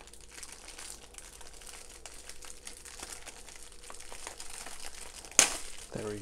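Clear plastic packaging bag crinkling as it is handled, with one loud sharp crackle near the end.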